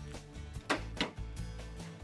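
Background music, with two sharp clicks a little under a second in as a Chevrolet Silverado's tailgate latch is released and the tailgate is let down.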